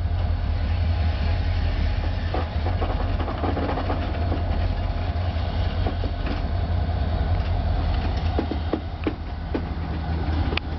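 A set of B&LE SD40T-3 tunnel-motor diesel locomotives creeping past at walking pace. The EMD two-stroke engines run with a steady low rumble, and the wheels click sharply over the track a few times, about two seconds in and again near the end.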